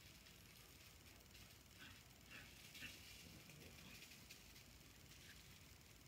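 Near silence: room tone with a few faint, scattered small clicks and rustles.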